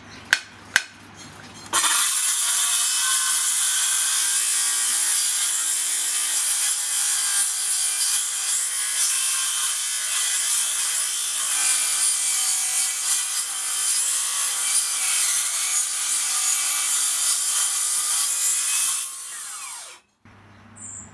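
Makita XGT 40V CS002G cordless cold-cut metal circular saw with a 45-tooth blade cutting through 8 mm steel plate: after a few sharp clicks, the cut starts about two seconds in as a loud, steady, high-pitched sound that runs for about seventeen seconds and dies away near the end as the blade clears the plate.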